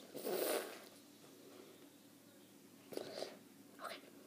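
A boy whispering in short breathy bursts: one longer burst at the start, then two brief ones about three seconds in and near the end.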